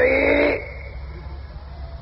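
A man's voice holding out a drawn word for about half a second, then a pause with only the steady low hum and hiss of an old recording.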